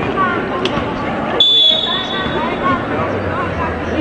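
Volleyball referee's whistle blown once, a single steady shrill note lasting about a second, over the chatter and noise of the arena crowd.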